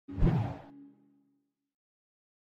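Logo intro sound effect: a short whoosh that dies into a brief low ringing tone.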